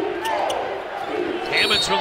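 Basketball game court sound: sneakers squeaking on the hardwood and a ball being dribbled, over arena crowd noise that grows louder near the end.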